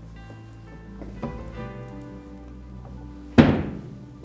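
A heavy framed painting in an ornate wooden frame knocks down with one loud thunk about three and a half seconds in, over soft background music with sustained notes.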